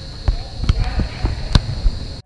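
A football being played with the feet on artificial turf: a run of about five dull thuds, the loudest about a second and a half in.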